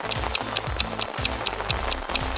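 Background music with a fast, steady ticking beat, about six or seven ticks a second, over low bass notes.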